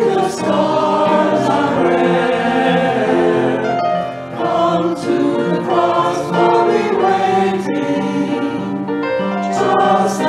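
Mixed choir of men and women singing a slow sacred anthem in parts, with piano accompaniment.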